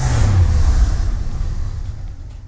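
Cinematic transition sound effect: a sudden deep boom and rumble with a whooshing hiss on top, fading away over about two seconds.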